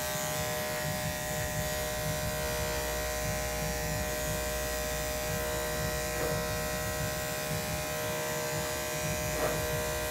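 Electric dog grooming clippers fitted with a #40 blade, running with a steady buzz while trimming close around a Yorkshire terrier's feet.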